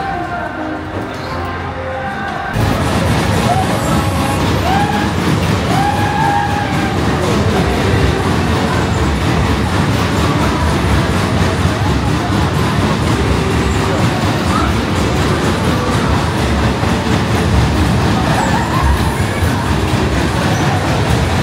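Background music for about two seconds, then an abrupt jump to the much louder, dense din of a spinning fairground ride running, with music and voices mixed into it.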